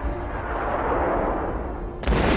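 Battle sound from a war film: a steady noisy din of distant gunfire and explosions over a low rumble.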